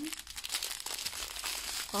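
Plastic bags of diamond-painting drills crinkling as a strip of them is handled and moved, a continuous crackle of many small clicks.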